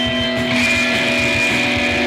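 Loud live band music: a droning wall of distorted electric guitar with long-held notes over a low rumble. A new high sustained tone comes in about half a second in.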